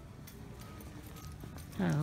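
Shopping-mall background: a low steady rumble with faint distant sounds and light clicks, then a person's voice says "look at" near the end.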